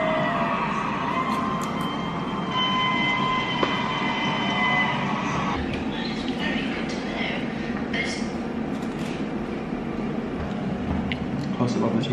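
Steady rumbling background noise with indistinct voices in it. A few held tones sound in the first half.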